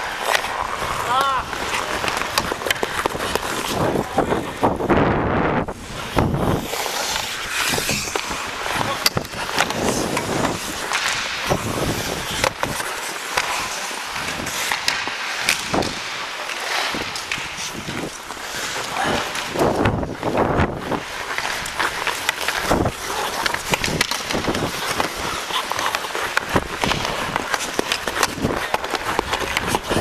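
Ice hockey skate blades scraping and carving on rink ice, with sharp clacks of sticks and puck coming again and again.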